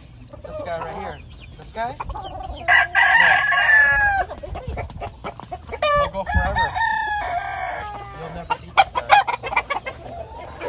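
Roosters crowing, with a long drawn-out crow that falls off at the end about three seconds in and another around six seconds, among shorter clucks and calls from other chickens.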